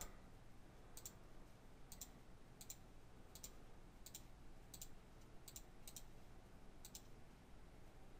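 About ten faint, sharp clicks of a computer mouse button at irregular intervals, as editor tabs are closed one by one.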